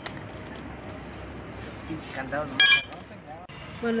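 A sharp metallic clink with a brief bright ring, about two-thirds of the way in, from steel tools or lug nuts while a car wheel is being changed. Low voices and steady background noise run under it.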